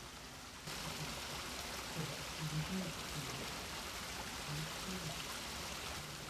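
Steady hiss of running water, like a mountain stream, coming in abruptly about a second in, with a few faint low sounds over it.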